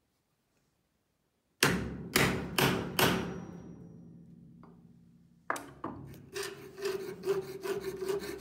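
A few sharp knocks about a second and a half in, ringing away over a couple of seconds. About five and a half seconds in, a fretsaw with a fine metal blade starts cutting a 1 mm brass sheet in quick, even strokes, with a steady ringing note over them.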